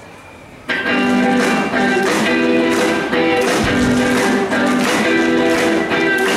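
Live band with electric guitar, bass, drums and horn section playing. The music drops to a brief lull, then the whole band comes back in together less than a second in and keeps playing with a steady drum beat.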